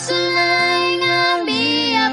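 A Cebuano Christian worship song: a high voice holds one long sung note over steady instrumental backing, then slides down to a lower note about a second and a half in.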